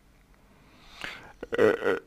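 A pause, then a man drawing a breath and making a short throaty voiced sound just before he speaks again.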